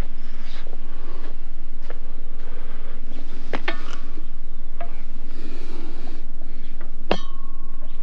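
Sharp metallic clangs over a steady low hum. Two come close together about three and a half seconds in, and a louder one about seven seconds in rings on with a steady tone for nearly a second.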